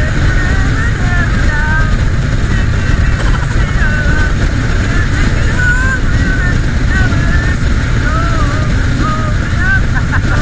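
Wind rumbling over the microphone of a motorbike-mounted camera at road speed, with a voice singing a wavering melody over it.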